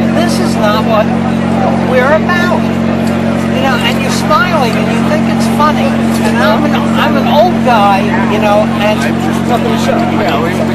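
Men talking close by over a steady low mechanical hum. The hum fits the noisy floodlight set up over the protest area.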